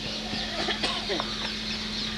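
Short, scattered bird calls over a steady low hum.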